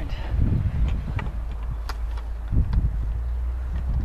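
Wind buffeting the camera's microphone: a steady low rumble that surges twice, with a few faint light clicks.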